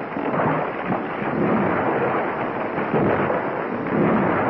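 Continuous rumbling crash of a derailing log train, its cars and logs tumbling down an embankment. The noise stays dense and unbroken throughout, with no distinct single impacts.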